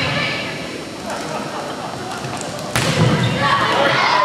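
Volleyball rally in a school gym: voices of spectators and players murmur and call out, and a sharp smack of the ball comes about three-quarters through, after which the crowd noise rises.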